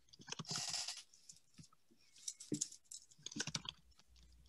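Faint typing on a computer keyboard over a video-call microphone: scattered clicks in a few short runs, with a brief rustle about half a second in.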